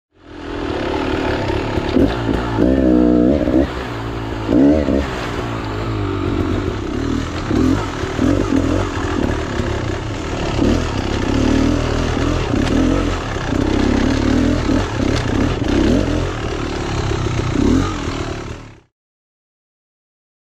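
Beta X-Trainer two-stroke dirt bike engine revving up and down as it is ridden over a rocky trail, with clattering and scraping from rocks under the wheels. There are sharp rev surges about 3 and 5 seconds in, and the sound cuts off suddenly near the end.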